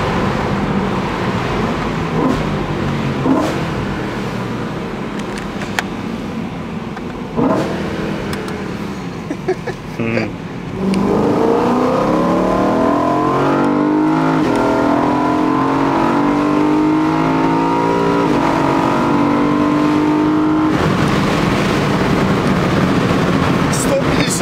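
BMW M3 engine heard from inside the cabin: a steady drone for the first ten seconds, then, after a brief dip, the engine note climbs under acceleration for about ten seconds. Near the end it gives way to a rushing wind noise.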